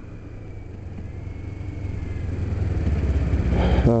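Riding noise from a 2008 Kawasaki Ninja 250R motorcycle, its engine running with wind rushing over the microphone, a low rumble that grows steadily louder over the last three seconds.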